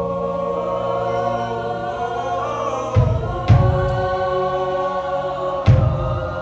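Show choir singing a long held chord in several parts, with three deep drum hits: two close together about halfway through and one more near the end.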